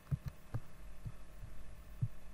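Several soft, dull low thumps at irregular intervals over a steady low hum, typical of handling or desk knocks picked up by a desktop recording microphone.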